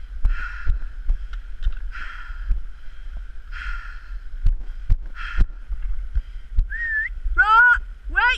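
A walker breathing hard, about one breath every second and a half, with trekking-pole tips clicking on rock and wind rumbling on the microphone. Near the end come two short, rising, high-pitched vocal calls.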